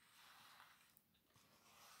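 Near silence, with a faint rustle of a paper picture-book page being turned.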